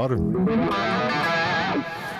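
Electric guitar played through effects: a short phrase of wavering, bending notes that fades out near the end.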